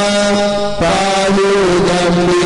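Devotional aarti hymn being sung, with long held notes; the notes break and change a little under a second in.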